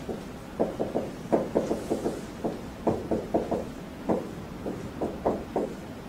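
Dry-erase marker writing on a whiteboard: a quick, uneven run of short taps and strokes as letters are written, thinning out in the last couple of seconds.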